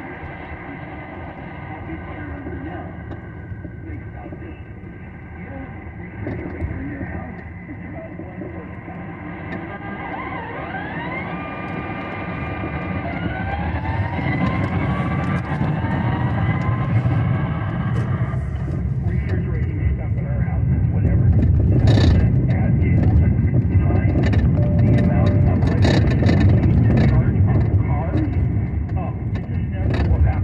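Car driving noise heard inside the cabin: engine and tyre rumble that builds up about halfway through as the car picks up speed. A few brief rising tones sound a little before that, and faint talk plays underneath.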